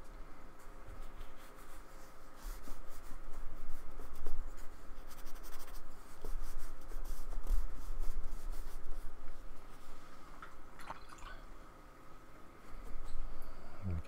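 A paintbrush stroking acrylic paint onto a card surface, with soft scratchy brushing that is busiest a few seconds in.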